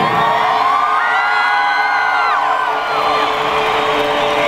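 Large arena crowd cheering and screaming, many high voices whooping at once and swelling through the middle, over a steady note held by the band.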